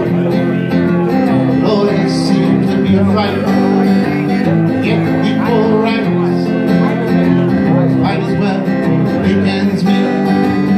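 Acoustic guitar strummed steadily through a country song's chords, played live.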